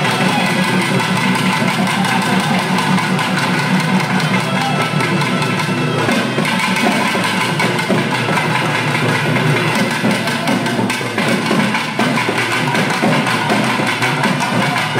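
Loud, fast drumming from a festival percussion ensemble, with other instruments, played continuously in a dense, driving rhythm.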